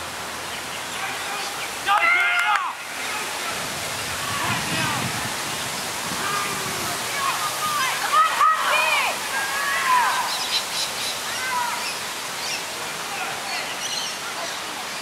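Shouts and calls from players and spectators at a field sports match, loudest about two seconds in and again around eight to ten seconds, over a steady outdoor hiss.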